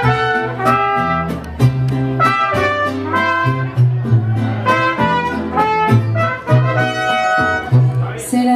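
Mariachi band playing a song's instrumental introduction: trumpets carry the melody over strummed guitars and a line of bass notes that changes every beat or so.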